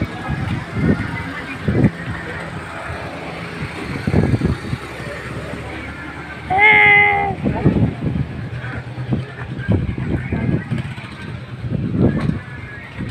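Street traffic with engines running, and a short horn beep a little past halfway through, lasting under a second.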